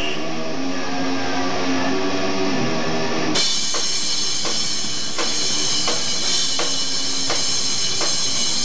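Live rock band playing, heard through a camcorder's microphone. Held guitar notes ring for about three seconds, then the full band comes in at once with a wash of cymbals and a steady drum beat, a hit roughly every 0.7 seconds.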